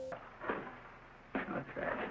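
Faint workshop handling sounds on an old film soundtrack: a soft wooden knock about half a second in, then a few short clatters and bits of a voice in the second half.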